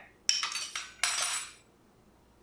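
Metal spoons clinking and clattering against each other as they are picked up off a cloth and set down: a short clink about a third of a second in, then a longer ringing clatter about a second in.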